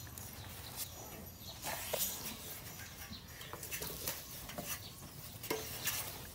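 A young elephant rubbing its body against a wooden fence rail to scratch an itch: faint scraping with scattered light knocks.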